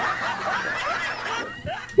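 A woman's stifled laughter, snickering behind her hand, trailing off quieter toward the end.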